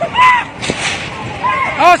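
A crowd of people shouting, with a shrill yell just after the start and another burst of shouts near the end. There is one short, sharp crack about a third of the way through.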